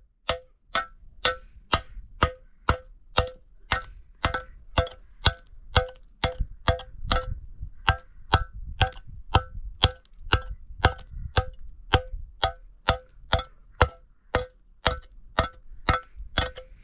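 Hatchet chipping at a concrete block in a steady run of blows, a little over two a second, each blow with a short metallic ring.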